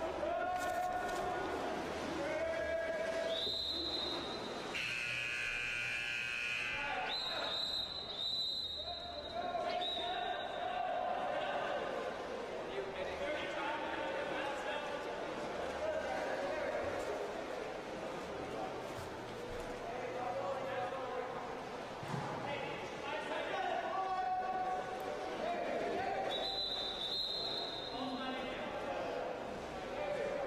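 Echoing indoor pool during a water polo game: players and bench shouting, with several short, high whistle blasts from the referees. About five seconds in, a buzzer-like horn sounds for about two seconds.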